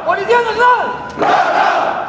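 A leader's shouted call, answered about a second in by a formation of police officers shouting together in unison: a ceremonial cheer given by the ranks.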